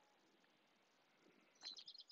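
Near silence, then faint bird chirps coming in about one and a half seconds in.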